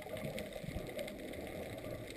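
Muffled underwater noise heard through a GoPro's waterproof housing on a reef: a steady low rumble of moving water with faint scattered clicks.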